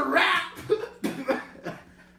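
A man coughing: a run of about five short coughs, the first the loudest and the rest getting fainter.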